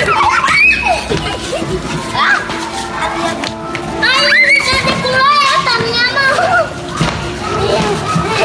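A group of young children shouting, squealing and laughing as they play, loudest about halfway through, with background music underneath.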